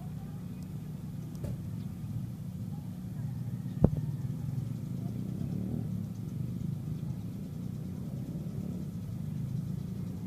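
A steady low, engine-like hum, with a single sharp click about four seconds in.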